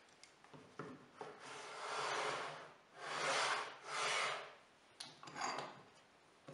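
Steel track clamp being slid along a T-track slot in an MDF board: three long scraping strokes, then a shorter one, with a few sharp knocks as it is set in place.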